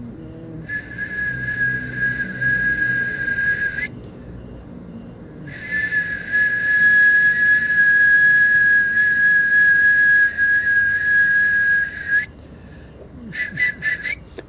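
A steady high whistling tone, held for about three seconds, then after a short break for about seven seconds with a slight fall in pitch, and a couple of short whistled bits near the end.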